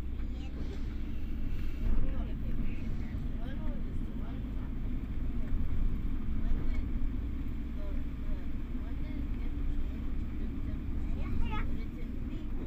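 Steady low rumble of a vehicle driving, heard from inside the cabin, with faint voices underneath.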